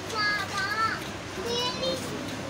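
A young child's high-pitched voice, two short vocal sounds, the first wavering in pitch, the second a little lower and steadier, over the background noise of a crowded room.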